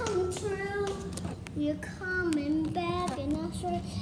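A young girl singing a slow melody, her voice sliding between held notes, over a steady low hum.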